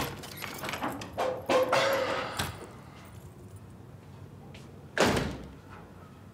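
Light clicks and clinks of plates and tableware being set on a table, then, about five seconds in, one loud heavy thud of an apartment's front door.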